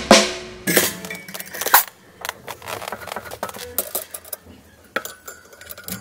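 A snare drum struck twice in the first two seconds, each hit ringing briefly, then sparse light metallic clinks and clicks of a drum key and drum hardware as the snare is being tuned.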